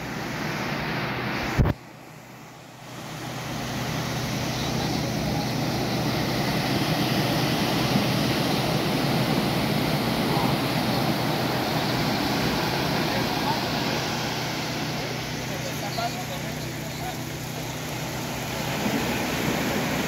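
Ocean surf breaking and washing up the beach, a steady rushing noise, with a low steady hum underneath. About two seconds in there is a click and the sound drops for a second before the surf noise returns.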